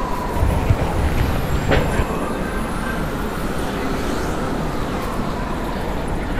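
City street traffic noise, a steady rumble, with a siren wailing slowly up and down over it.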